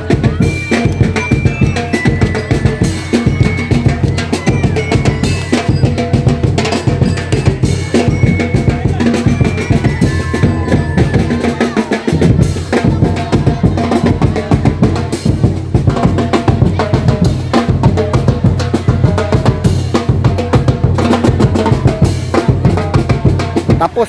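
Drums and percussion, bass drum and snare, playing a steady driving beat for a parade, with crowd voices underneath.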